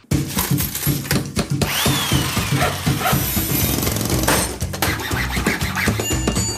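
Loud intro sound montage of power-tool and workshop noise, drilling and sawing, mixed with music. It starts abruptly.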